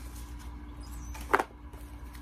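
One short knock, about a second and a half in, as papers and items in a cardboard subscription box are handled, over a steady low background hum.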